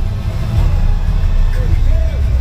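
Loud, muffled hall sound from a stage PA, picked up by an overloaded handheld microphone: a heavy low rumble with voices calling out over it.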